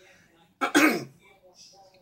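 A man clearing his throat once, a short harsh burst a little over half a second in.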